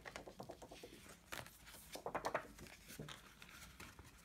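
Faint rustling and crinkling of a plastic binder sleeve and paper being handled, in several short bursts.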